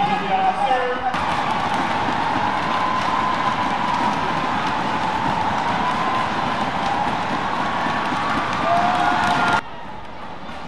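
Arena crowd noise at a badminton match: a dense, steady din of many voices, with a faint held tone wavering through it. It follows a short stretch of voices in the first second and cuts off abruptly near the end.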